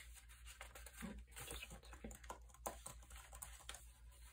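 Faint rustling and light taps of paper as the pages and folded inserts of a handmade journal are handled and turned.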